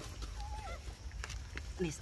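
A macaque's short call, one pitched note that bends and falls, about half a second in, with a few light clicks and a faint low rumble underneath.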